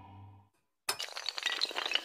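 A low droning tone fades out, and after a short silence a sudden crash starts a dense run of glassy clinks and clatter: a shattering sound effect for an animated intro.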